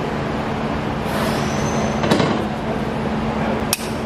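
Steady workshop hum, with a brief hiss of air about a second in and two sharp metallic clicks, from the hex socket and ratchet being worked on the tight transaxle drain plug.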